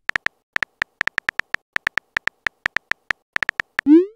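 Simulated phone-keyboard key clicks from a texting-story app, a quick irregular run of short taps. Right at the end a rising whoosh begins, the app's message-sent sound.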